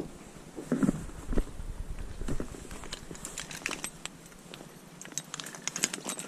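Rustling and crackling close to the microphone: a couple of soft knocks about a second in, then a run of fine crackles in the second half.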